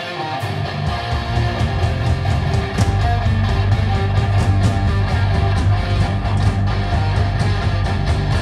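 Heavy rock electric guitar playing the opening riff of a song live, with the low end filling out about a second in.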